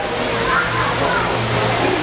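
Steady rushing background noise, with faint voices of other people mixed in.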